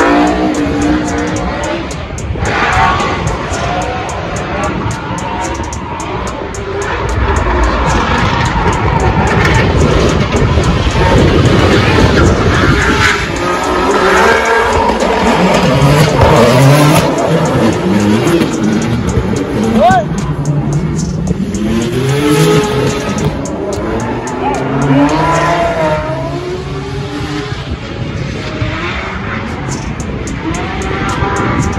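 Drift cars sliding through smoke, their engines revving hard with the pitch rising and falling again and again over the tires squealing.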